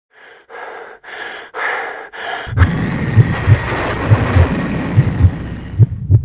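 Five quick, heavy breaths, about two a second. Then, a little before halfway, a slow heartbeat begins, beating in lub-dub pairs about once a second over a steady rushing noise.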